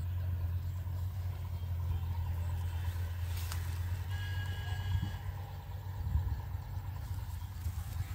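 A steady low rumble, with a single click about three and a half seconds in and a brief high tone lasting about a second just after it.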